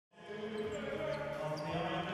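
Basketball arena ambience: a steady murmur of crowd and court noise, with a few faint high squeaks or ticks.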